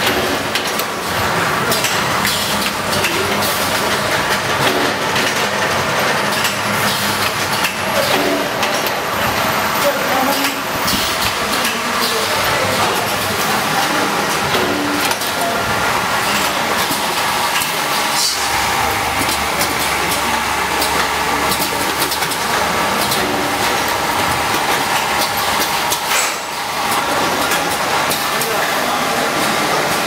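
Automatic food vacuum packaging machine running: a steady mechanical clatter with frequent sharp clicks and clacks from its moving parts.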